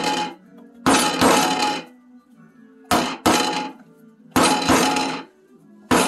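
Loud blows of a claw hammer on a whole coconut, about five strikes at uneven intervals, two of them close together near the middle. The shell is not cracking; the coconut is taken for hollow and gone rotten.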